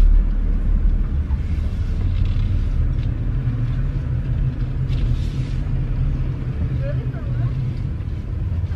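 Steady low rumble of a car running, heard from inside the cabin as it moves slowly.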